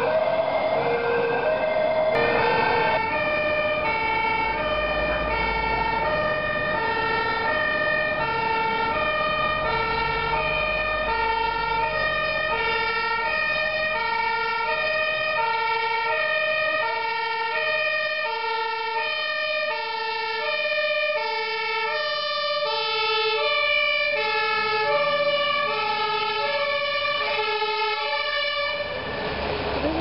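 Dutch fire engine's two-tone siren sounding continuously, a high note and a low note alternating about once every two-thirds of a second.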